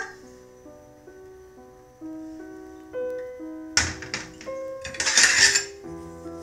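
Background music of held keyboard notes. Near the end come two short noisy squirts, the second the louder: tomato sauce being squeezed from a squeeze bottle into a glass baking dish.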